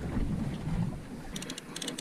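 Wind buffeting the microphone over open-sea water noise on a boat, then a quick run of faint, high clicks in the second half.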